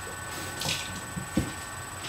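Wooden spoon stirring thick muffin batter in a mixing bowl: a soft, uneven squishing, with a couple of light knocks of the spoon in the second half.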